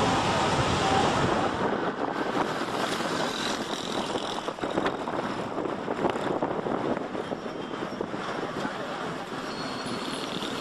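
Road traffic noise: a steady rushing hiss of passing vehicles, a little louder for the first couple of seconds.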